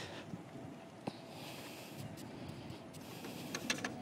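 Fat-tire electric bike being ridden on a sandy dirt track: a faint, steady rolling noise from the tyres and drivetrain, with a few light clicks near the end.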